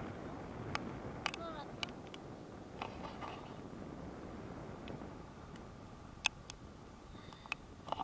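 Steady wind noise from the airflow rushing past the camera microphone in paraglider flight, with a few sharp clicks scattered through it.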